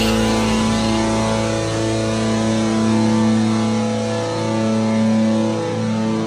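Rock song instrumental passage with no singing: distorted electric guitar chords held long, changing every second or two over a steady low drone.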